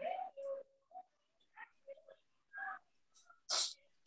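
A person sneezing once, sharply, near the end, after a few faint murmured words.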